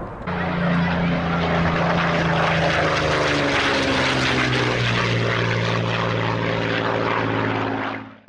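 Propeller aircraft engine running steadily, its pitch dropping slightly about halfway through.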